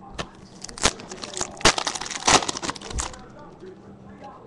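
A foil trading-card pack wrapper being torn open and crinkled by hand, a quick run of crackling rustles that stops about three seconds in.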